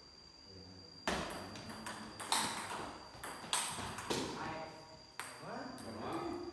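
Table tennis rally: the ball clicks sharply off rubber paddles and the table about once a second, each hit ringing on in the hall. A voice calls out near the end.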